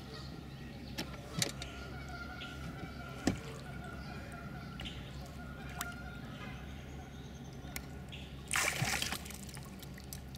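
Water sloshing and splashing beside a boat hull as a snapping turtle is wrestled at the surface, with a few sharp knocks and a louder splash near the end, over a steady low hum.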